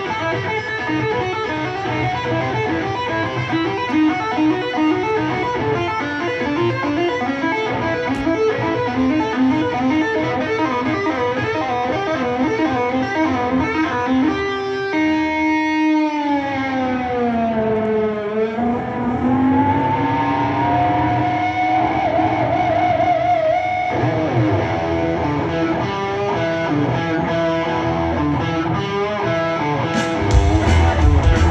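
Electric guitar solo played live through a concert PA: quick runs of notes for the first half, then a held note that slides down in pitch and climbs back up, followed by a wavering sustained note.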